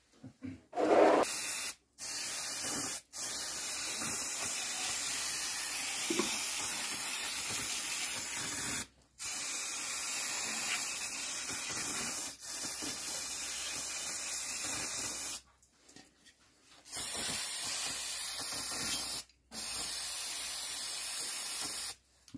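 Aerosol spray can hissing in long bursts of several seconds each, with short breaks between them. It is washing coolant residue off the engine's timing-belt area, since coolant damages the belt.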